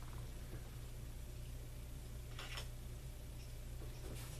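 Quiet room with a steady low hum, and one faint, brief rustle about two and a half seconds in.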